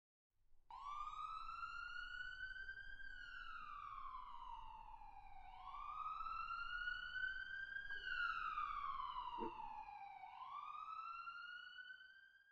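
Emergency vehicle siren in a slow wail, its pitch rising and falling in long sweeps of roughly two and a half seconds each, starting just under a second in and fading out near the end.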